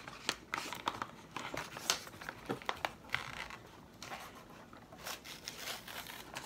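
Plastic toy packaging being crinkled and torn open by hand: a run of irregular crackles and rustles as the pack is worked open with some difficulty.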